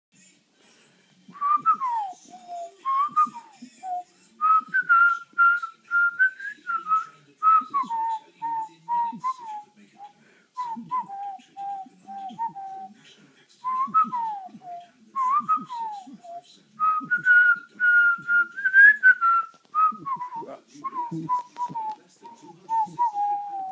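A person whistling in short phrases throughout: falling slides from high to low, long held high notes, and runs of short, quick lower notes.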